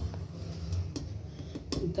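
A few light metallic clicks of a steel ladle against an aluminium pot as cooked rice is scooped out.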